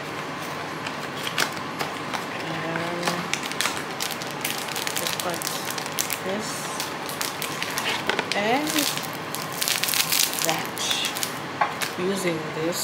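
Packaging of a brownie-mix kit being opened and handled: a cardboard box and a plastic pouch crinkling and crackling in quick irregular bursts, busiest in the second half.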